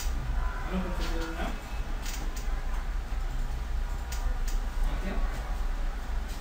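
Indistinct, low voices talking in a room over a steady low electrical hum, with a few sharp clicks scattered through.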